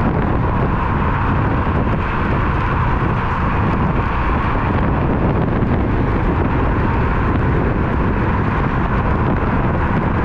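Steady loud wind rush on a GoPro's microphone while riding an electric scooter at speed, with road noise underneath and no breaks.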